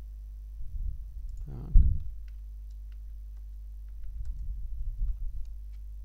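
Computer keyboard typing: scattered light key clicks and dull low thuds of keystrokes, in two spells. About one and a half seconds in there is a short, louder vocal sound.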